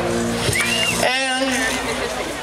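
A live band's held chord on electric and acoustic guitars and bass, fading away over the first second or so. A short whistle comes about half a second in, then a high, wavering whoop of a voice.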